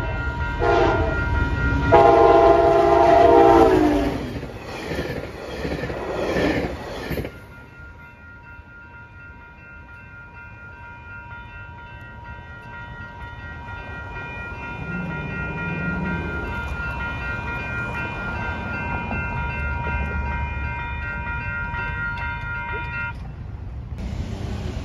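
NCTD Coaster commuter train sounding its horn, a short blast then a long one that drops in pitch as the train passes at full throttle, followed by a few seconds of wheel and rail clatter. After the train is gone, the grade-crossing bell rings steadily and stops shortly before the end.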